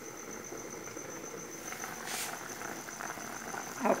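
Pot of pequi stew boiling on the stove: a steady bubbling with faint irregular crackle, under a thin steady high-pitched pulsing tone.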